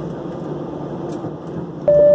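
Steady cabin noise of an airliner on the ground, heard from inside the cabin: an even rumble with a faint low hum. A clear held tone begins just before the end.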